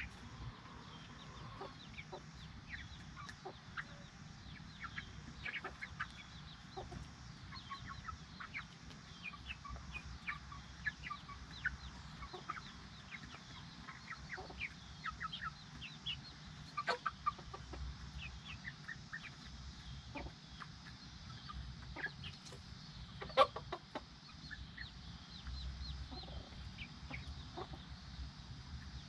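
Silkie chickens, a brood of chicks with their hen, peeping and clucking in many short, scattered calls as the chicks crowd under the hen. One sharper, louder sound stands out about three-quarters of the way through.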